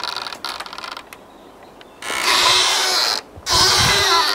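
Rope swing creaking and squeaking as it swings: a rattle of quick ticks at first, then after a pause two long, loud, scraping creaks in a row. It is the swing's fittings being really, really noisy.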